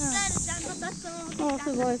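Girls' voices chatting, with a cry of "sugoi" near the end, over a steady high-pitched insect hiss. A few light footsteps on wooden boards fall between the words.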